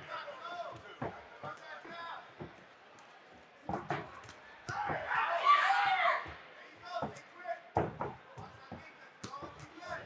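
Scattered sharp thuds from boxers' feet landing on the ring canvas and gloved punches, coming irregularly every second or so. A voice shouts from ringside for about a second and a half in the middle.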